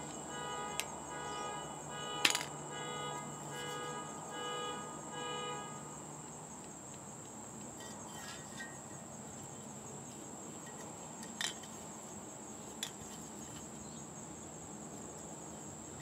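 A car alarm sounds its pulsing electronic tones and stops about six seconds in, over a steady high chirring of crickets. A few sharp plastic clicks come as the 3D-printed clip is pushed onto the spray can, the loudest about two seconds in.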